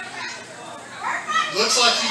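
Ringside audience in a hall, with children's voices calling out: quieter for the first second, then high-pitched voices pick up again about a second and a half in.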